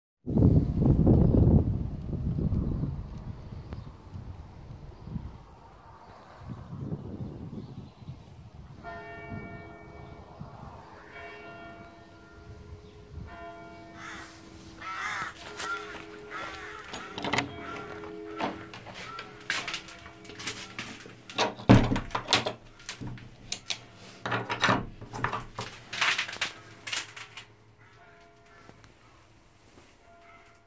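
Church tower bell striking the hour, strokes coming every second or two from about a third of the way in, each leaving a lingering hum. Under the later strokes there is a run of sharp knocks and clatter, loudest about three quarters of the way through, after a loud low rumble at the very start.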